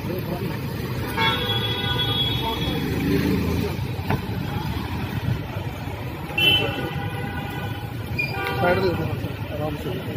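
Street traffic rumble with vehicle horns honking: one long horn blast about a second in and a short toot past the middle.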